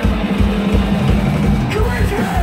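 Loud live punk rock band playing: distorted electric guitars and bass holding steady notes over a fast, driving drum beat, with a vocalist's voice in the mix.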